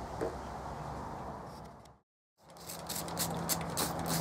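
A low steady hiss fades out, and after a brief break a hand trigger sprayer squirts in quick repeated pumps over a low steady hum. The sprayer is rinsing an aluminum part with distilled water after degreasing.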